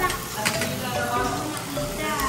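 Meat sizzling on a tabletop Korean barbecue grill, a steady frying hiss.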